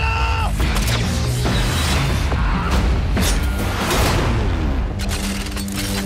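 Action-trailer music mixed with heavy booms and crashes. A rush of sound swells to a peak about four seconds in, then a steady low drone takes over for the last second.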